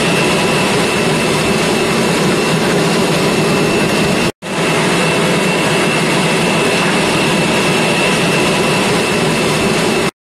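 John Deere tractor's engine running steadily under load as it pulls a front press toolbar and a Claydon Hybrid tine drill through the soil. The sound cuts out for an instant about four seconds in, then carries on the same.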